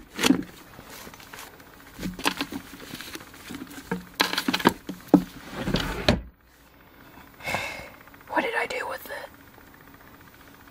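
Books, binders and albums being shifted and knocked about on a shelf: a run of irregular knocks and rustles. About six seconds in, a drawer is pushed shut with a low rumbling thud.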